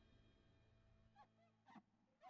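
Near silence: a faint steady hum, with two very faint brief sounds, one about a second in and one near the end.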